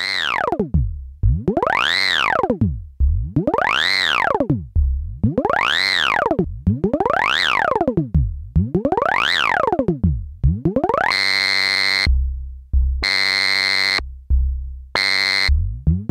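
A looping synth pluck sample, re-struck over and over, with its pitch driven by an LFO. First a triangle wave sweeps the pitch smoothly up and down about every two seconds. From about eleven seconds in, the pitch jumps back and forth between a high and a low note, and near the end it glides steadily upward.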